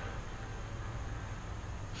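Steady outdoor background noise: a low rumble with a faint hiss and no distinct event.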